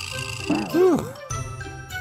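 Light background music with a tinkling, chime-like jingle, and a short wordless vocal sound with a rising-and-falling pitch about half a second in.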